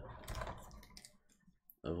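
Crinkling and light clicking of foil booster-pack packaging being handled as a pack is pulled out of the box, strongest in the first second and fading away.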